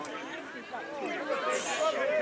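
Chatter of several voices talking over one another, with no single clear speaker.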